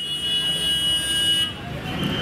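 A motor vehicle's engine rumbling past on the road, with a high, steady horn-like tone over it. The tone breaks off about one and a half seconds in, and a second one starts near the end.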